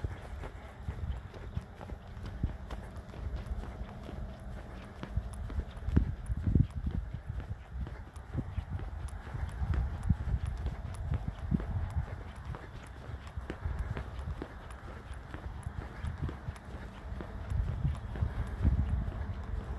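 A person's footsteps on an asphalt road, irregular thuds with a low rumble on the microphone as it is carried along.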